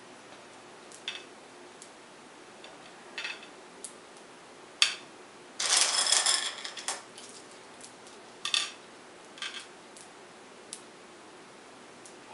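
Jelly beans clicking against a bowl and a glass tray as they are scooped up and set down by hand: scattered single clicks, with a longer rattle of beans about six seconds in.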